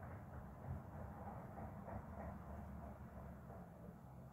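Faint, scratchy brushing of a small flat paintbrush dragging wet acrylic paint across a stretched canvas, in uneven strokes, over a low steady hum.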